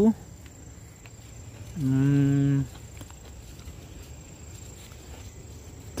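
A steady high-pitched insect trill, typical of crickets, runs on under a low outdoor background. About two seconds in a man's voice holds one flat hum for under a second.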